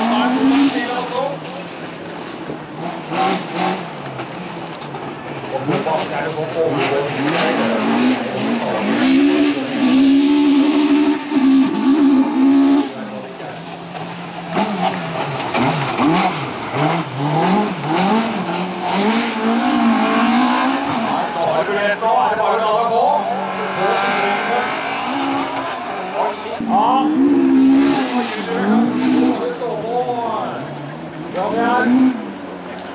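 Rallycross car engines revving hard at speed, the engine note rising and falling over and over as the cars accelerate, lift and change gear on a loose gravel track.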